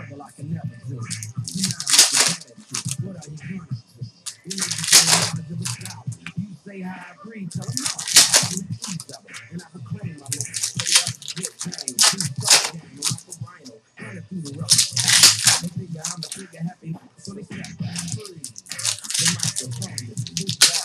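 Trading card pack wrappers being torn open and cards handled, in short crinkly rips about every three seconds.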